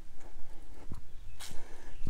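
Footsteps on a paved concrete path: a few irregular steps over a steady low rumble.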